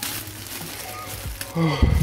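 A clear plastic zip-lock bag of small plastic parts crinkling and rustling as it is handled, loudest right at the start. Near the end come a brief murmur from the voice and a low thump.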